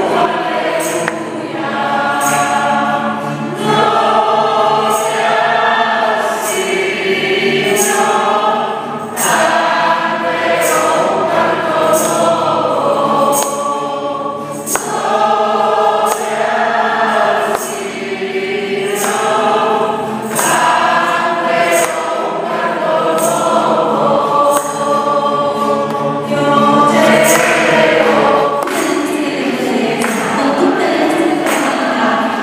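A congregation singing a worship song together, in phrases with short breaths between them. A regular percussion beat keeps time.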